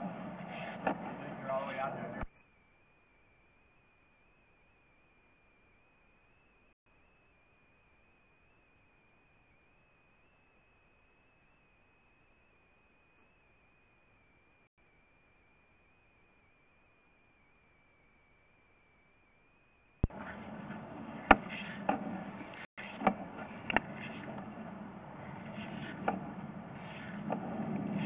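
Faint background noise with a few sharp clicks at the start and over the last third. Between them is a long stretch of near silence with only a faint, steady high whine.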